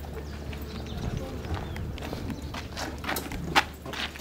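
Scattered clacks and footsteps of several people moving a metal stretcher, with a sharper knock about three and a half seconds in. Low voices murmur underneath.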